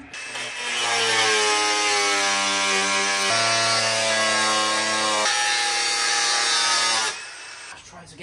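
Power tool cutting down over-long steel mounting bolts: a loud, steady whine with a hissing edge that shifts in pitch twice, then stops a second before the end.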